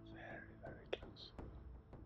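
Whispered speech: a person whispering "So we are very, very close." A sharp click comes about a second in.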